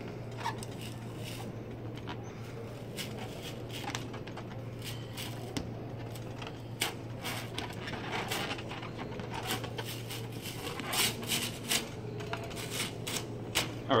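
Clear plastic transfer tape crackling and clicking as it is peeled back off vinyl lettering on a 3 ft latex balloon, with hands rubbing the balloon skin. The crackles come scattered, thickest in the second half, over a steady low hum.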